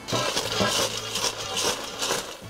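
Crisp grilled fries rustling and clattering against each other and a stainless steel bowl as the bowl is tipped and shaken, a dense crackly rattle.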